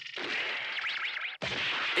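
Cartoon rushing whoosh sound effect, steady and noisy. It cuts out sharply for a moment about one and a half seconds in, then resumes.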